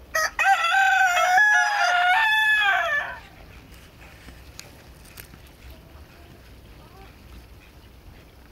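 A rooster crowing once: a short opening note, then a long call held at a few steady pitches for about three seconds, dropping away at the end.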